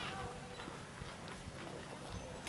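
Quiet open-air ballpark ambience: faint distant voices and a few light knocks, with no loud event.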